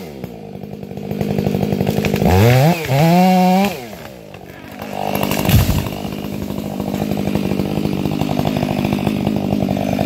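Chainsaw idling, revved up twice in quick succession about two to three and a half seconds in. A single heavy thud about five and a half seconds in as the felled dead tree trunk hits the ground, then the saw idles on.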